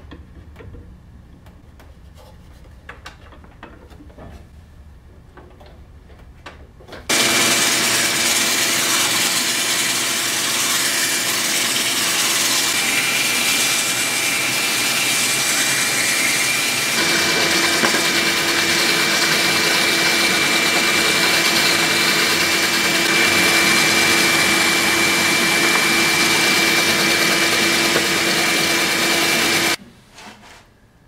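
A drill press spins a wooden pipe blank while sandpaper is held against it, with a dust-extraction vacuum running at the work. The loud, steady whir with a high whine starts suddenly about seven seconds in. A lower hum joins partway through, and it all cuts off just before the end.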